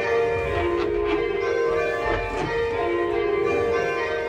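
A ring of church bells rung full circle in English change ringing: the bells strike one after another in quick succession, their tones overlapping and ringing on.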